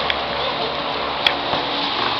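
Steady room noise of a sparring session on mats, with one sharp click a little past the middle.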